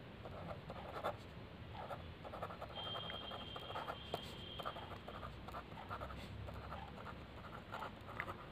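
Pen scratching on notebook paper as a line of words is handwritten, in short, faint, irregular strokes.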